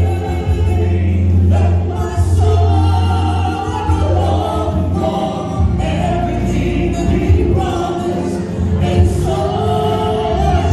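A woman and a man singing a gospel worship song live into microphones, over instrumental accompaniment with a strong bass.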